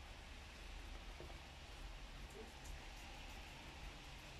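Guinea pig eating chopped vegetables, with a few faint crunching clicks around the middle, over a steady low background rumble.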